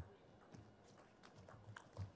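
Table tennis rally: the ball ticking sharply off the rackets and the table, a quick irregular run of about ten taps in two seconds, the first tap the loudest.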